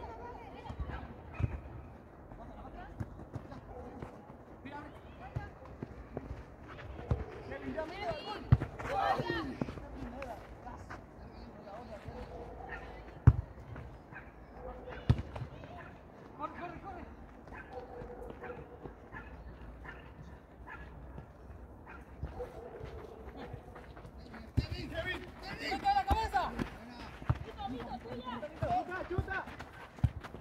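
Players' voices calling and shouting across an outdoor football pitch, in two spells, with a few sharp thuds of a football being kicked, the loudest about a third of the way in.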